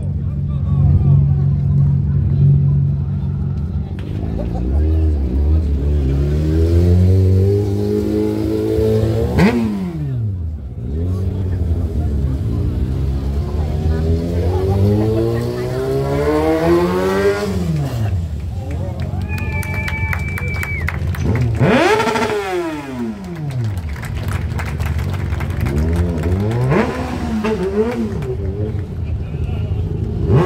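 Stunt motorcycle engine revving hard during stunt riding, its pitch repeatedly climbing to a peak and then dropping off. The sharpest climbs come about ten, seventeen and twenty-two seconds in.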